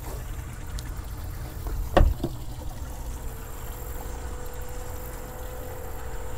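Low steady outdoor rumble with a single sharp thump about two seconds in, followed by a lighter knock.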